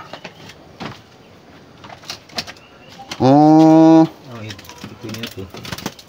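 A man's voice: a loud, drawn-out exclamation of about a second, about three seconds in, followed by quieter talk, with a few faint knocks in between.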